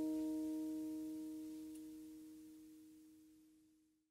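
The last chord of an acoustic-guitar song ringing on as a few steady notes and fading out to silence just before the end.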